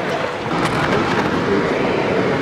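Steady, rough noise of wind buffeting the microphone, mixed with water splashing in shallow water.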